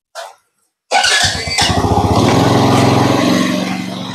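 Motorbike engine starting: a brief starter sound, then the engine catches about a second in and runs loud and steady, easing off near the end.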